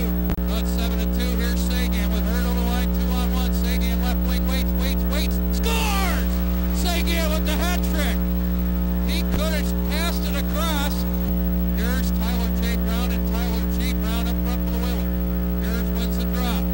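Loud, steady electrical mains hum, with arena crowd voices and pitched sounds, music or voices, rising and falling over it.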